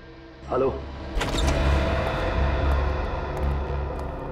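Dramatic suspense sound design: a short falling cry-like sound about half a second in, then a sudden loud hit at about a second in, followed by a heavy low rumble with a pulsing beat.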